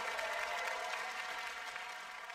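Audience applause fading away, with the ring of the music's final chord dying out beneath it.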